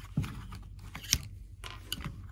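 Small plastic clicks and scrapes of an action figure and its accessories being handled, with a sharper click just after one second.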